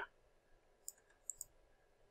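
Faint computer mouse clicks in near silence: a single click about a second in, then a quick pair of clicks shortly after.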